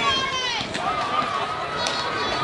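Voices calling out and chattering, one high voice drawn out and falling in pitch at the start. A single sharp click comes near the end.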